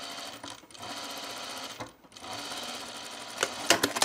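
Industrial sewing machine stitching a tuck in linen, running steadily with a brief stop about halfway through, then a few sharp clicks near the end.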